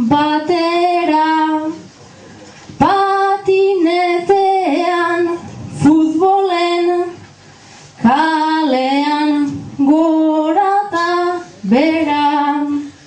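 A solo voice singing an improvised Basque verse (bertso) unaccompanied, in high-pitched sung lines with short pauses between them.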